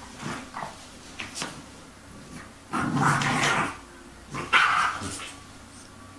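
Bulldog puppy vocalizing: a longer grumbling sound lasting about a second, about three seconds in, and a shorter, sharper one a second and a half later.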